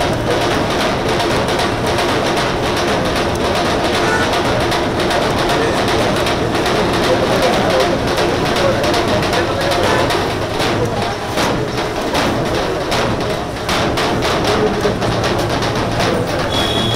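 Large steel-shelled street drums beaten with sticks in an uneven, crowded rhythm, with the voices of a crowd mixed in.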